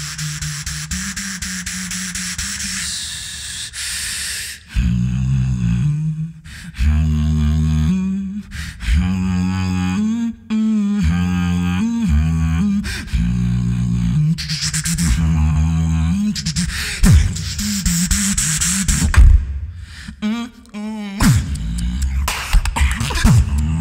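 Solo beatboxing into a handheld microphone. After a quieter opening, the beat starts about five seconds in, with deep bass tones shifting in pitch and punctuated by sharp kick and snare sounds.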